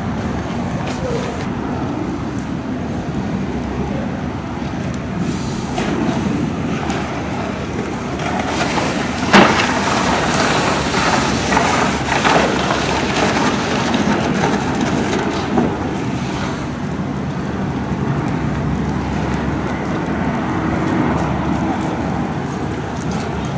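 Heavy vehicle engines running amid street noise, with one sharp bang about nine seconds in and a few lighter knocks after it.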